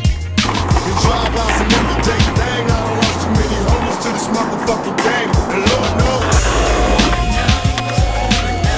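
Skateboard wheels rolling on concrete and the board's trucks grinding along a ledge, a rough continuous scraping noise that starts about half a second in. Hip-hop music with a steady bass beat plays underneath.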